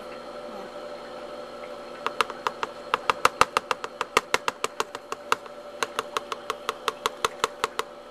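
A rapid run of sharp clicks, about five or six a second, starting about two seconds in, pausing briefly just past the middle and stopping near the end, over a steady hum.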